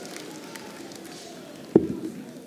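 Steady low crowd murmur in the arena, then near the end a single sharp thud as a steel-tip dart lands in the bristle dartboard.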